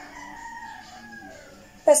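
A long drawn-out animal call in the background, held for about a second and a half and dropping in pitch at its end.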